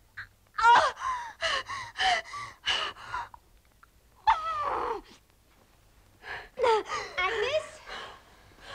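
A woman in labour gasping and crying out in pain: a quick run of short gasps, then one longer cry falling in pitch about four seconds in, and more gasps near the end.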